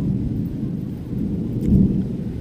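Thunder rumbling low and continuous in a thunderstorm, swelling louder about three-quarters of the way through.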